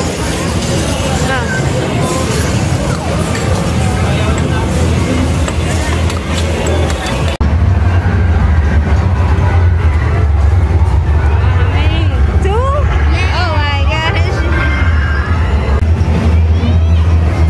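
Busy arcade hall din: electronic game machine music and sound effects mixed with background chatter. After a break about seven seconds in, a steady low hum dominates, with a few sliding electronic tones near the end.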